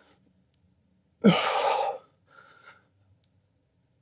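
A man's hard, forceful exhale of effort, under a second long, followed by a couple of faint breaths.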